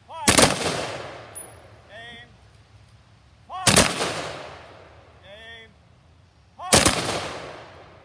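Honor guard firing a three-volley rifle salute: three volleys about three seconds apart, each a sharp crack with a long echoing tail. A short shouted command comes before each volley.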